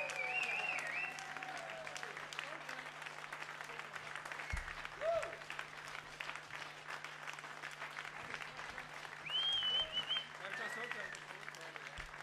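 A small audience of about fifty applauding and cheering after a song, with a couple of whistles near the start and again late on.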